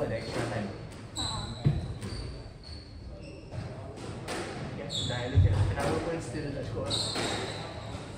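Squash play echoing in a large hall: short high squeaks of court shoes on the wooden floor, a couple of sharp thuds from ball strikes, and voices in the background.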